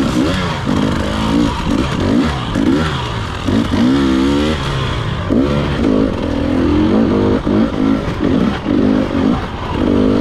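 Dirt bike engine revving up and down over and over as the throttle is worked on tight singletrack, steadier for a couple of seconds past the middle, with some clatter from the bike.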